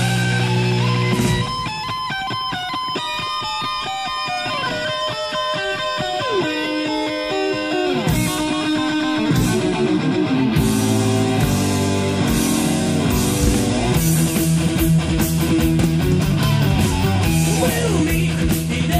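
Heavy metal song in an instrumental passage: an electric guitar plays a melodic lead line of held notes that step and slide over the band. The low end drops back about a second and a half in and comes back in full around eight seconds.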